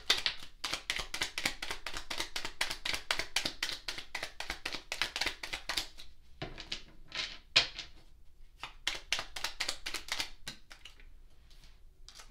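A deck of tarot cards being shuffled by hand: quick runs of soft card clicks and flicks, with a short break about six seconds in, thinning out near the end.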